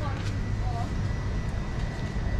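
Steady low hum of a supermarket's background, with a faint thin high tone held throughout and a brief faint voice just under a second in.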